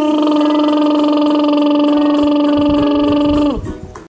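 A woman's voice holding one long, steady buzzing hum on a single pitch, the bee sound of the "bumblebee" face-yoga exercise made through pursed lips. It stops about three and a half seconds in.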